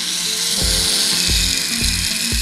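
A small pen-style rotary tool spinning a 10 mm diamond cutting wheel, cutting into a plastic model-car interior part: a steady high hiss. Background music with a steady beat plays under it.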